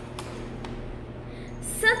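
Quiet room tone with a low steady hum and a couple of faint clicks, then a woman starts speaking near the end.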